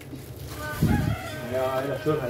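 A rooster crowing: one long drawn-out call that starts just under a second in. A dull low thump comes at the same time.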